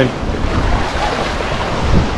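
Black Sea surf breaking and washing around in the shallows, a steady rushing with a low rumble of wind on the microphone.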